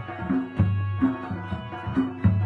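Instrumental passage of Chitrali (Khowar) folk music: a plucked long-necked lute and drum beats in a steady rhythm, with hand clapping.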